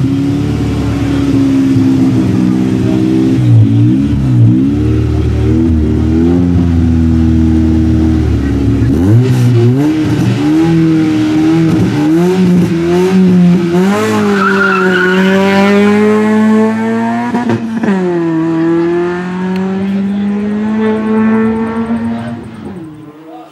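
Race car engine idling with the revs blipped up and down, then pulling away hard, its pitch climbing, dropping once at an upshift and climbing again.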